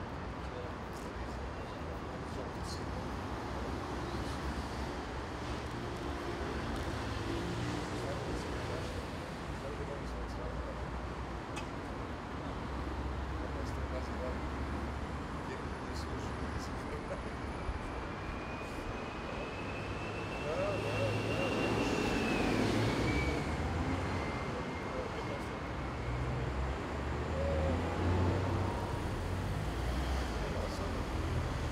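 City street traffic: cars and buses passing on the road, with indistinct voices of passers-by. About two-thirds of the way through the traffic grows louder and a thin high whine slides up and then drops away.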